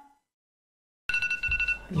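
An iPhone timer alarm ringing: a two-pitched electronic alert tone that starts about a second in, after a second of silence, and stops shortly before the end, with a low rumble underneath. It marks the end of a 30-minute charging countdown.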